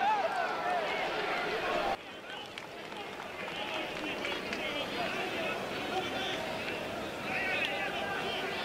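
Football stadium crowd, many voices singing and shouting together. It is louder for the first two seconds, then drops suddenly to a quieter crowd murmur.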